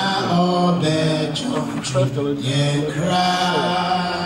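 A man's voice singing a slow melody in long held notes that slide from one pitch to the next.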